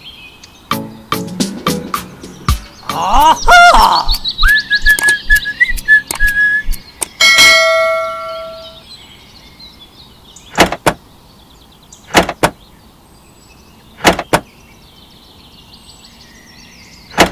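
A string of added sound effects over faint bird chirps: rapid clicks, a warbling sweep, a held whistle, and a bell-like ding that fades, followed by single sharp knocks about every one and a half to two seconds.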